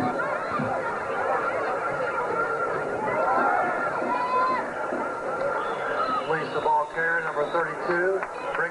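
Football crowd yelling and cheering during a play, many voices overlapping, with sharper, choppier shouts in the last two seconds.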